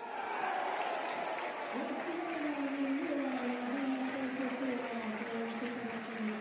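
Spectators applauding and cheering a run in a pesäpallo match, breaking out suddenly. From about two seconds in, a held tone steps slowly down in pitch over the applause.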